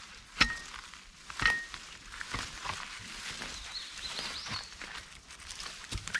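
Steel T-post being levered out of the ground with an upside-down T-post driver: two sharp metallic clinks with a brief ring, about half a second and a second and a half in, then softer knocks and rustling in the grass.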